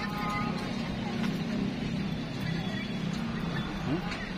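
Steady low hum of vehicle engines running in a parking lot, with faint background voices.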